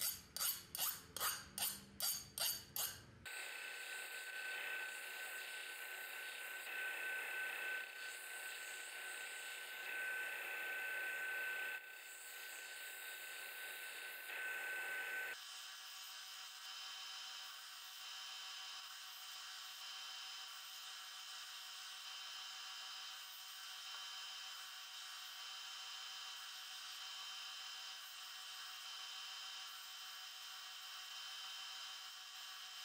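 A file scraped in about nine quick, even strokes along the edge of a freshly quenched steel knife blade in the first three seconds: a file test of the blade's hardness. Then a belt grinder runs steadily as the hardened blade is ground against the belt, its tone changing about halfway through.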